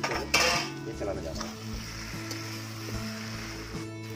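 A short metallic clatter as a steel lid is lifted off a kadai, less than a second in, over steady background music.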